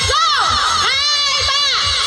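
A crowd of party guests shouting and cheering together in a toast, many voices overlapping in rising and falling calls, with low repeated thumps underneath.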